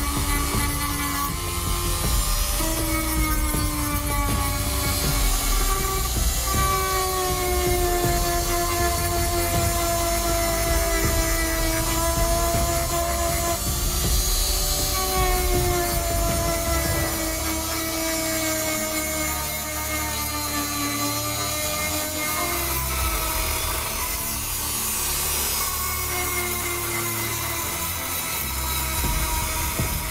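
Background music over a continuous grinding from a rotary tool's sanding drum held against a ring spinning on a drill-driven mandrel, sanding the ring's crushed-stone inlay on its steel core.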